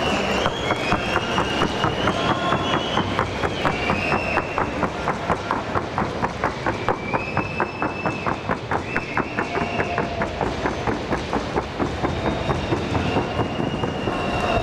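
A trotting horse's hooves striking a wooden sounding board in a quick, even rhythm of sharp clicks. High whistle-like tones come and go over the hoofbeats.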